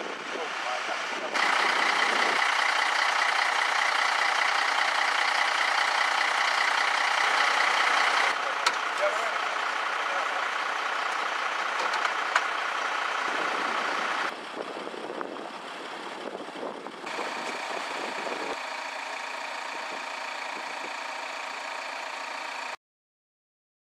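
Emergency vehicles' diesel engines idling in a steady hum, with voices in the background. The sound changes abruptly several times where the footage is cut, loudest in the first third.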